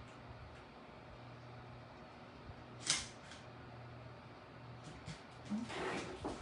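Quiet room tone with a faint steady low hum, broken about halfway through by a single sharp tap from crafting materials being handled on the table, with a few fainter ticks later.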